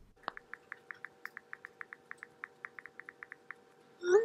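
Faint keyboard clicks from an iPhone's on-screen keyboard as a text message is typed: about twenty quick ticks, several a second, stopping shortly before the end.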